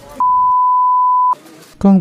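A single electronic beep: one steady pure tone, about a second long, that starts and stops abruptly, with dead silence either side of it.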